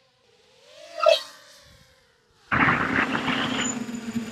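Racing quadcopter's electric motors and propellers heard from its onboard camera. A whine glides in pitch and swells up and falls away about a second in. From about two and a half seconds a loud, steady rushing noise with a low hum takes over.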